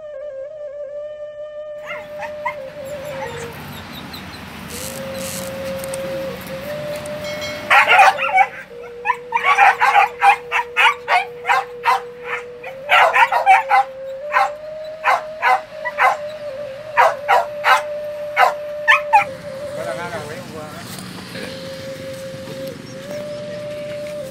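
A pack of hunting dogs barking in a quick run of short barks, about two a second, starting about eight seconds in and stopping some eleven seconds later. Background music with a long held melody line plays throughout.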